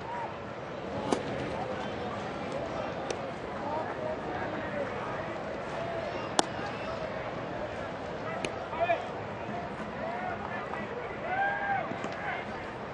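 Ballpark crowd chatter with a few sharp pops of a baseball smacking into a leather glove, the loudest about six seconds in.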